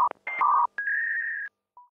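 A quick sequence of electronic beep tones, alternating between a lower and a higher pitch and each cutting off sharply. The last high tone is held for most of a second, and a faint short low beep follows near the end.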